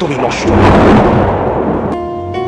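Thunder sound effect played over the stage sound system: a rumble that swells to its loudest about a second in, then slowly dies away.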